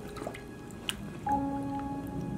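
Water dripping and lightly splashing in a shallow plastic kiddie pool as a puppy noses and tugs at a doll in it, with a few sharp drips, the clearest about a second in. Background music with held notes plays along.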